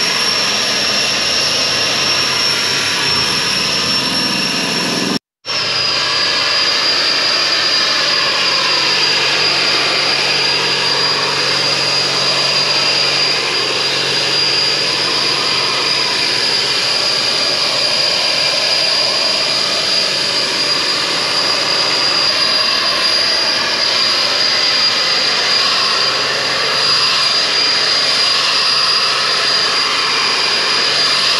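Birchmeier AS 1200 battery-powered spray blower running steadily: a loud rush of air with a high, steady fan whine. It cuts out for an instant about five seconds in.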